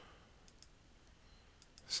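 A few faint, scattered clicks of a computer mouse and keys, over quiet room hiss.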